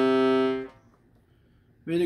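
Salanti two-reed piano accordion with hand-made reeds sounding one steady held tone, which breaks off within the first second.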